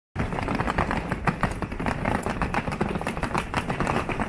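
Wheeled suitcases rolled over cobblestones: their small wheels clatter in a fast, uneven rattle over the stones.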